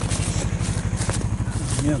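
Snowmobile engine idling steadily with a rapid low putter. Clothing rubs against the microphone a few times.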